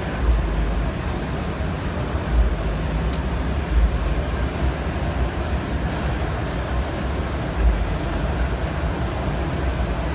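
Steady low rumble of a busy trade-show hall, swelling a few times. A few faint clicks sound through it.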